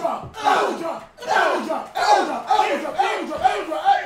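Several people yelling and hollering over one another in loud, short, repeated bursts.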